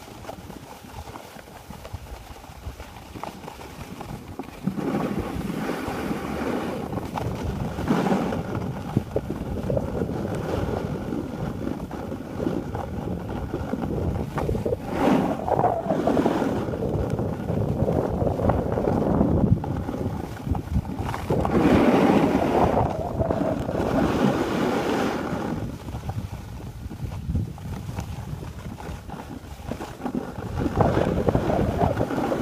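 Wind rushing over the microphone of a camera carried by a skier, with skis sliding and scraping on packed snow, rising and falling in several swells and loudest about two-thirds of the way through.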